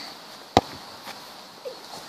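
A single sharp knock about half a second in, over faint outdoor background noise.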